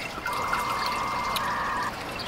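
Pool water trickling steadily at the pool edge, with a steady, fairly high tone that starts just after the beginning and lasts about a second and a half.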